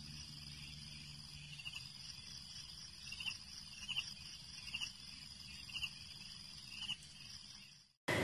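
Faint ambience of a steady high-pitched drone with short chirps repeating about once a second, over a low hum; it fades out just before the end.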